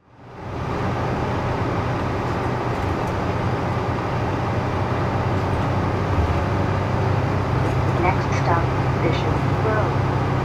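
Orion V transit bus heard from inside its cabin while under way: a steady drone of engine and road noise with a strong low hum, fading in at the start. A few brief higher-pitched wavering sounds come in near the end.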